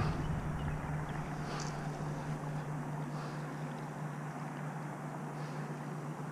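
A faint, steady low drone of a distant motor over quiet outdoor background noise.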